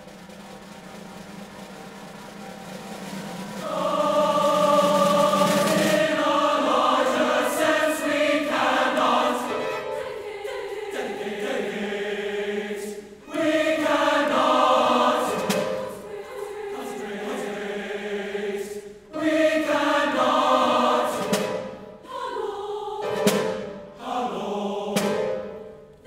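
Large mixed youth choir singing a loud sacred choral piece with string orchestra, piano and timpani. It opens on a low sustained note that swells louder, the full choir comes in about four seconds in, and it goes on in long phrases with short breaths between them.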